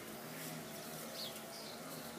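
Quiet background with a few faint, short, high chirps from small birds.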